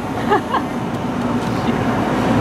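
Steady low mechanical hum with faint voices in the background.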